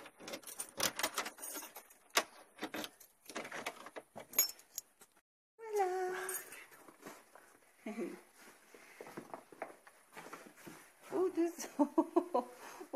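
Keys jangling and clicking with handling knocks at a house door, a quick run of sharp clicks and rattles through the first five seconds. A brief voice is heard about six seconds in and again near the end.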